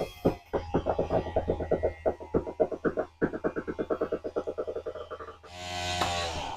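RV slide-out room motor extending the slide. It runs with a rapid, even clatter of about eight or nine pulses a second over a low hum, then stops by itself about five and a half seconds in, followed by a brief smoother whir.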